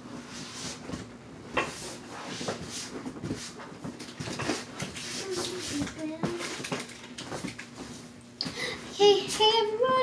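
A girl's voice in high, drawn-out notes gliding upward, loudest near the end. Before that there are scattered clicks and knocks over a faint steady hum.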